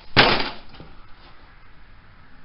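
A single loud metallic bang as a boot strikes an old rusted steel Chevy bumper and dents it, dying away within about half a second. The bumper gives under one blow because rust has left it weak.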